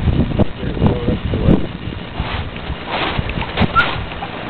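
Footsteps crunching through snow and brushing past branches, in an irregular run of soft thumps, with wind noise on the microphone.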